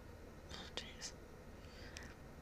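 A person's faint whispery breath or voice sounds close to the microphone, with one sharp click a little under a second in, over a low steady hum.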